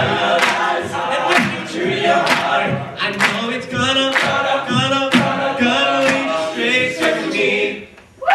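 Male a cappella group singing in full harmony over vocal percussion, with a snare-like hit about once a second. The singing cuts off together just before the end as the song finishes.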